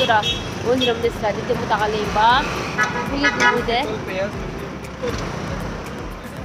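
A woman talking, her voice rising and falling in pitch, over a steady bed of street traffic noise.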